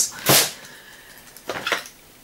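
Plastic cosmetic containers being handled: a short, loud rustle about a quarter second in as the toothpaste tube is put away, then a few faint knocks and rustles near the end as the next bottle is picked up.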